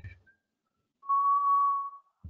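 A single steady electronic beep, one even tone lasting just under a second, starting about a second in.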